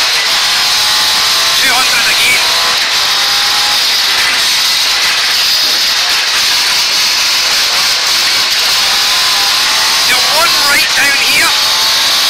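Ford Escort Mk2 rally car's Pinto four-cylinder engine running hard at speed, heard from inside the cabin, over steady loud road and wind noise. The co-driver's voice comes in near the end.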